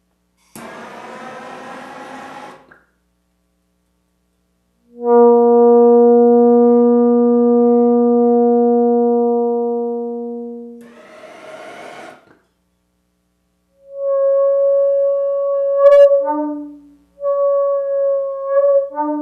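Blowtorch hissing as it heats the metal mesh inside a glass tube. The tube, held upright, then sings one loud, steady low note that fades out after about six seconds, a singing-tube (Rijke tube) tone driven by hot air rising through the heated mesh. After another short torch hiss, a shorter glass tube sings a higher note that breaks and jumps between pitches near the end.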